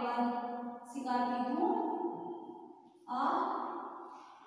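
A voice drawing out long held syllables in a slow, sing-song way, breaking off about a second in and again about three seconds in.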